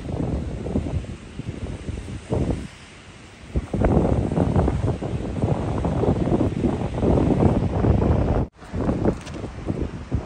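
Wind buffeting the microphone: a gusty, rumbling noise that rises and falls, easing off for about a second around three seconds in and cutting out for an instant near the end.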